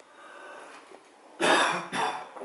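A person coughing once, hard and loud, near the end.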